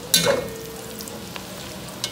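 Sliced hotdogs sizzling as they fry in a pot on a gas stove, stirred with a metal spoon. A sharp clank of the spoon against the pot just after the start, then the steady sizzle with a few faint scrapes and clicks.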